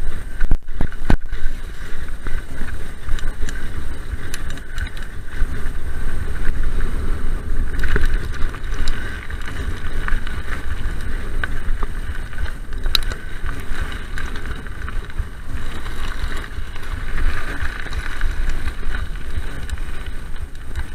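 Mountain bike running fast down a dirt and gravel trail: tyre rumble and wind buffeting on the microphone, with sharp knocks and rattles from the bike over bumps, a few just after the start and one about 13 seconds in.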